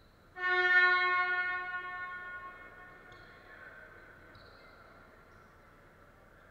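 Basketball scoreboard horn sounding once: a single loud, pitched electronic blast that starts about half a second in and fades out over about two seconds, signalling the end of a break in play.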